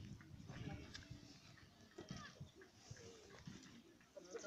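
Near silence: faint outdoor ambience with a few faint, short distant sounds.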